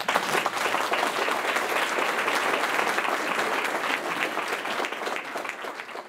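Audience applauding steadily, thinning out near the end.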